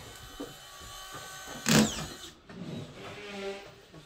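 A single loud, sharp knock about two seconds in, plywood stair blocks knocking together as they are shoved into place, over a faint steady hum.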